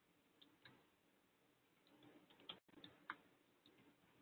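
Near silence: faint room tone with a few scattered, faint clicks, the strongest about two and a half and three seconds in.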